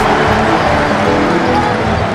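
Background music with held notes, over the arena noise of the game broadcast.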